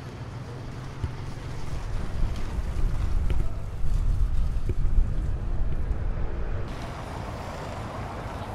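Wind buffeting the microphone: a loud, gusty low rumble that builds over the first few seconds and eases off near the end.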